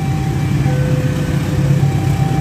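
Motorcycle engines idling together in stopped traffic, a steady low hum, with faint held higher tones over it.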